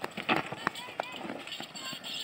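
Running footfalls and hoofbeats on a dirt track as a pair of bulls drags a stone sled, with a few sharp thuds in the first second and voices calling out.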